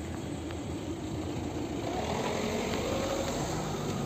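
Steady rumble of street traffic, with a vehicle engine hum growing a little louder from about halfway through.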